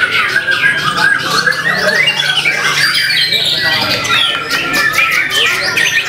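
White-rumped shama (murai batu) singing a continuous, varied song of quick rising and falling notes.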